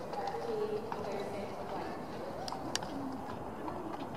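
Faint, distant voices over the soft, irregular hoofbeats of a horse trotting on arena sand, with a few sharp clicks.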